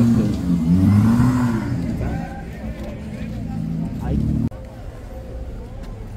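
Indistinct voices over a low, steady rumble, which cuts off suddenly about four and a half seconds in.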